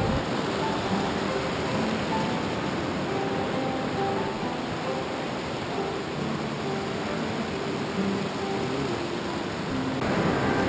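Steady rushing of a fast, rocky mountain stream, with soft background music playing over it.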